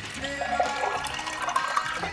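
Water running and splashing at a kitchen sink, under background music.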